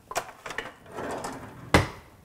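Kitchen utensil handling while a rubber spatula is fetched: a few light clicks and a short rustle, then one sharp knock near the end.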